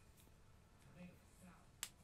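Near silence, with a faint, brief murmur about a second in and a single sharp click near the end.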